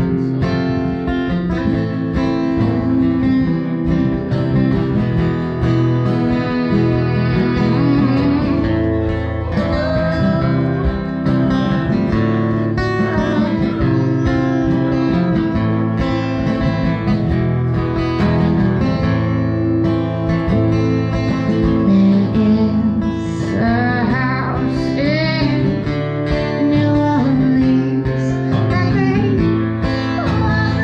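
Two acoustic guitars strumming a folk song in A minor, with a voice singing over them at times.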